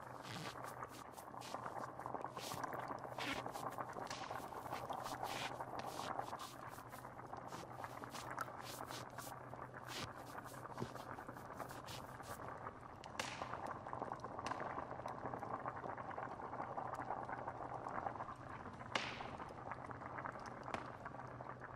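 A pot of stew bubbling steadily at a boil over a wood fire, with sharp fire crackles that come thick and fast for the first half and thin out later. A low steady hum runs underneath.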